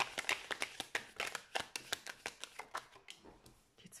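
A deck of After Tarot cards being shuffled by hand: a quick run of card clicks that thins out and stops about three seconds in. The deck is being shuffled until a clarification card jumps out.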